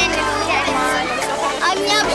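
Young girls' excited, overlapping chatter, with background music with steady low bass notes underneath.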